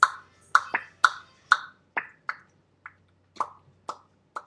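A run of about ten sharp mouth pops made with the lips, irregularly spaced, loudest in the first two seconds and growing fainter towards the end.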